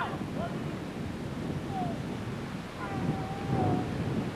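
Wind buffeting a camcorder microphone, with faint distant voices, including one drawn-out call about three seconds in.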